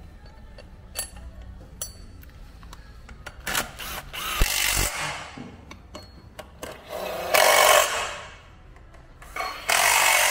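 Metal clinking twice with a brief high ring, then a workshop power tool running in three bursts of one to two seconds each, the last one starting near the end.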